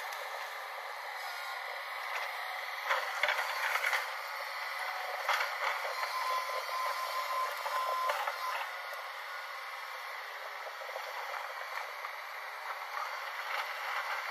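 JCB tracked excavator working a riverbank: steady machine noise with a few clanks and rattles, and a brief steady whine about six seconds in. It sounds thin, with no bass.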